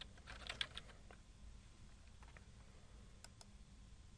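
Faint typing on a computer keyboard: a quick run of keystrokes in the first second, then a few isolated key or mouse clicks, over a low steady room hum.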